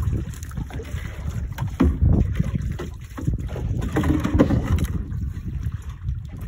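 Wind buffeting the microphone and water moving against a small wooden outrigger boat's hull, with scattered knocks as gear and line are handled aboard.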